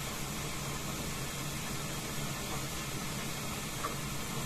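Steady hiss with a faint low hum underneath; no distinct sound stands out.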